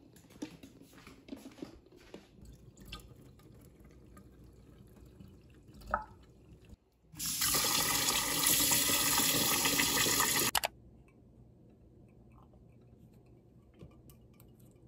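Kitchen tap running hard into a small saucepan of boiled eggs in a stainless steel sink, starting about seven seconds in and cutting off suddenly about three and a half seconds later.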